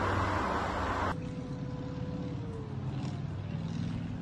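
Outdoor background noise from phone footage: a rushing noise that cuts off suddenly about a second in, followed by a quieter low, steady hum.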